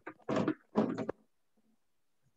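Two brief scraping sounds of a piston being pushed into an engine block's cylinder bore, which has a stiff spot from rust.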